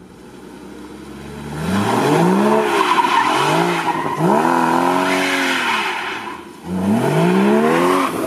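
Porsche Cayman GTS's flat-six engine revving hard through a run of bends, its pitch climbing and dropping several times as the driver accelerates and lifts off, with tyre noise underneath. It starts faint and comes up loud about a second and a half in, dips briefly near the end, then climbs again.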